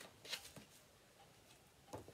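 A soft paper rustle as a picture book's page is turned, with a fainter rustle near the end.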